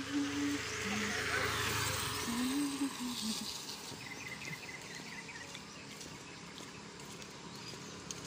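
A motorcycle passing close by and moving off down the road, its engine noise fading over the first two seconds. After that there is quieter outdoor ambience with faint high chirping.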